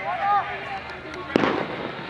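Voices of football players calling out on the pitch, then one sharp thump about a second and a half in.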